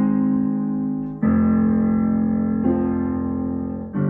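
Digital piano playing a slow chord progression: bass notes with chords held for a second or more each, a new chord struck about a second in, a change near three seconds and another at the end. Played very slowly as practice, so the left hand has time to find each chord.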